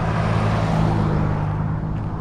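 Pickup truck driving past on the road: a steady engine drone with road noise, fading slightly near the end.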